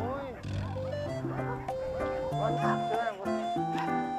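Several dogs barking repeatedly, over background music with held notes.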